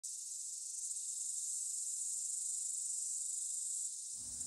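A steady, high-pitched chorus of insects chirring, unbroken throughout.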